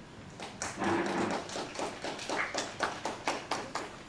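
Brief applause from a small seated audience, separate hand claps audible, several a second, stopping just before the end.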